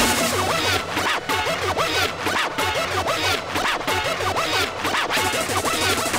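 Hardcore techno DJ mix in a breakdown: the pounding kick drum drops out at the start, leaving a busy run of quick, squiggly sounds that swoop up and down in pitch.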